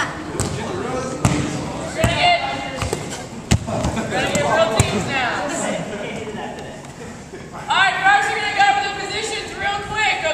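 A volleyball being hit and bouncing on a wooden gym floor, several sharp smacks scattered through the first half. Students are calling out over it, loudest near the end.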